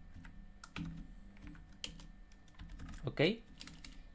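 Computer keyboard keystrokes: a handful of irregular, separate key clicks, over a low steady hum.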